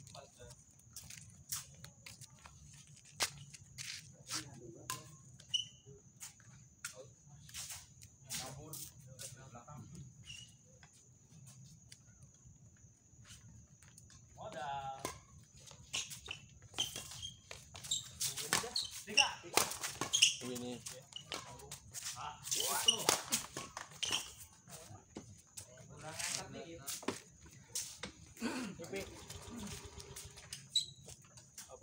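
Badminton rally: a string of sharp, irregularly spaced snaps of rackets striking the shuttlecock, growing busier in the second half.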